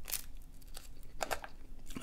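A person chewing a mouthful of chicken flatbread pizza, with a few soft crunches.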